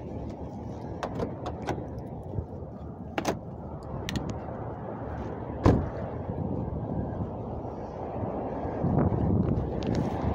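Wind and handling noise rubbing on a handheld camera's microphone, a steady rumble that grows louder near the end, with several small clicks and one louder thump a little past halfway.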